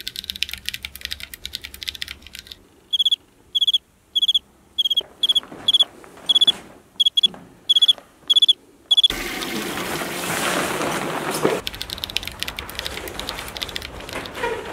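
Crickets chirping: a run of short, clear, high chirps, about two a second, for some six seconds. It is the comic 'crickets' cue for an empty, silent room. A rushing noise follows near the end.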